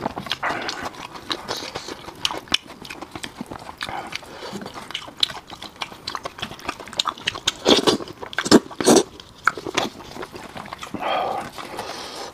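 Close-miked eating of braised fish: wet chewing, lip-smacking and sucking, mixed with the squelch of gloved hands pulling the fish apart. A cluster of louder wet sucking sounds comes about eight to nine seconds in.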